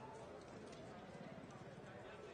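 Faint background ambience of soldiers gathered in a large hangar: an indistinct low murmur with small scattered clicks.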